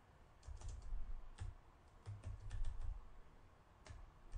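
Computer keyboard being typed on: faint keystroke clicks in several short bursts with pauses between them.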